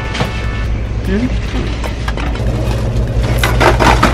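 Handling noise: knocks and clatter as items are put into a wire shopping cart, loudest near the end, over a steady low hum.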